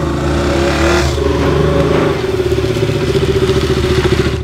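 Motorcycle engine revving, its pitch climbing and holding high in the second half.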